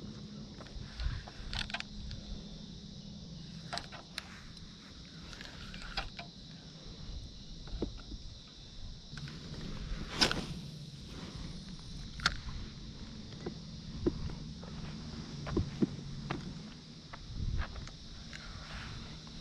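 Scattered knocks and clicks of an angler moving about on foot and handling a spinning rod and reel, the sharpest about halfway through, over a faint steady high drone.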